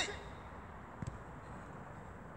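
A single soft thud about a second in: a football touched by a player's foot as he sets off dribbling, over faint steady outdoor background.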